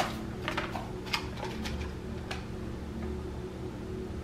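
Light, irregular clicks and taps from a clear plastic deli container being handled and toppings being picked up by hand, over a faint steady hum. The clicks thin out after the first couple of seconds.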